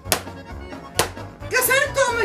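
A hammer tapping twice on the closed lid of a white plastic laptop, two sharp knocks about a second apart. A woman's voice cries out near the end, over background music.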